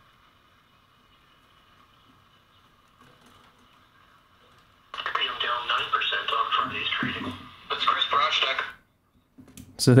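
A radio broadcast voice coming through a small transistor radio's speaker, thin and tinny. It is faint at first, turns loud about halfway in, and stops shortly before the end.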